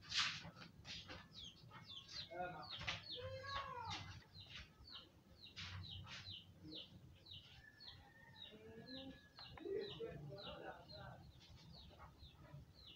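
Ballpoint pen scratching on lined paper as capital letters and numbers are written by hand: a quick, irregular run of short scratches, one for each stroke of the pen.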